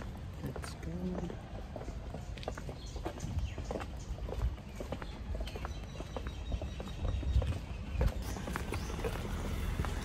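Footsteps of several people walking on a paved sidewalk: irregular taps and scuffs over a low rumble.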